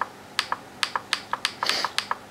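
Laptop touchpad buttons clicked repeatedly, a run of short sharp clicks at uneven spacing, about five a second.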